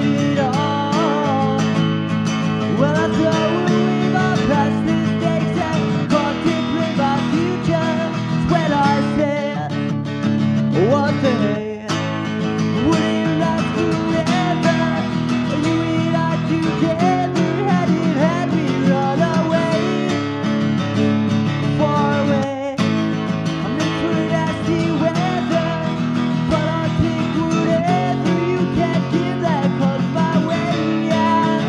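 A strummed acoustic guitar with a male voice singing over it, a solo rock cover performance. The playing breaks off very briefly twice.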